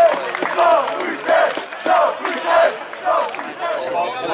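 Men shouting in a repeated, chant-like series of loud calls, about six in four seconds, each call rising and falling in pitch.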